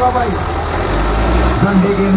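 Diesel engines of two farm tractors, a Farmtrac 6055 PowerMaxx and a New Holland 5510, running with a steady low throb while hitched together in a tug-of-war pull. The low engine sound changes about a second in. A man's voice talks loudly over it.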